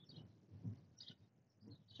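Near silence, with a few faint brief sounds.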